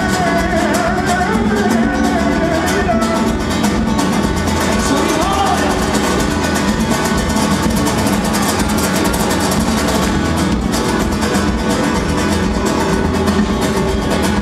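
Live rumba flamenca band playing: several acoustic flamenco guitars strummed rhythmically over electric bass, drums and keyboards.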